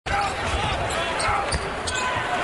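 Basketball bouncing on a hardwood court during live play, in game broadcast sound with arena voices behind it.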